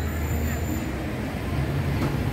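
Street traffic: motorbike and car engines running nearby as a low, steady drone.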